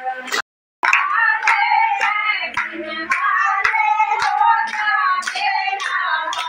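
A group of women singing a devotional bhajan together, with steady rhythmic hand clapping. The sound cuts out completely for a moment about half a second in.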